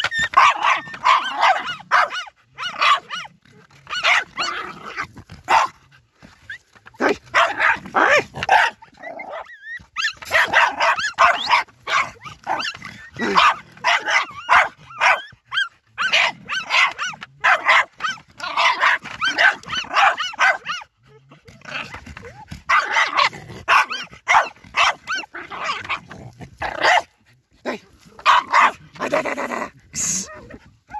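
German hunt terrier (Jagdterrier) barking hard and fast at a fox in its earth, in rapid bouts with short pauses between them.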